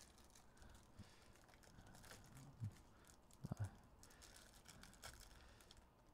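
Very faint crinkling of a foil trading-card pack wrapper being torn open by hand, with a few soft scattered clicks.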